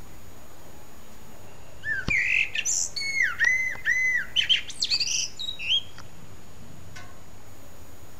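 A songbird sings one phrase of about four seconds, starting about two seconds in: a few clear notes, three repeated down-slurred whistles, then quicker, higher twittering notes.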